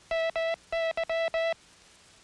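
International Morse code sent as a single steady keyed tone: two dahs, then dah-dit-dah-dah, the letters M and Y that end the word "enemy". The tone stops about one and a half seconds in.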